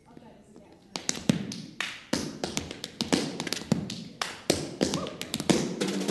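Tap shoes striking a stage floor in a solo tap-dance rhythm of quick, irregular clicks, starting about a second in.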